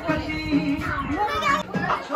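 Dance music playing loud with a regular beat, with lively, excited voices of several people over it.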